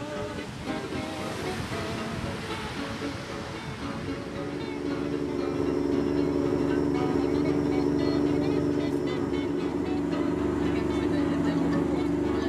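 Background music over breaking surf. About five seconds in, a steady low hum of a passenger boat's motor comes in, with voices.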